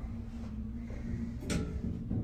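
Otis hydraulic elevator car in travel, heard from inside the cab as a steady low hum. One sharp clunk comes about a second and a half in as the car nears the first-floor landing.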